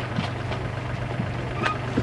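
Steady low hum of running machinery, with a couple of faint knocks and a short sharp click near the end.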